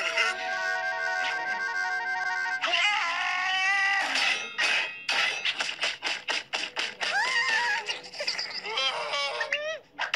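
Cartoon score music: held chords at first, then a rising glide and a run of quick rhythmic hits, with a character's wordless vocal noises over the music near the end.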